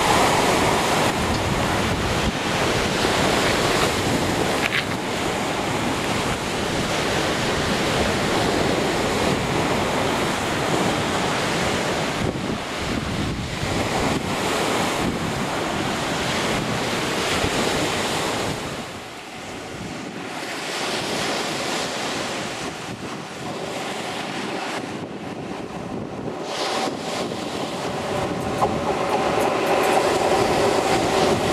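Sea surf washing against a sea wall, with wind buffeting the microphone. The noise is steady and loud, eases for a few seconds about two-thirds of the way through, then builds again.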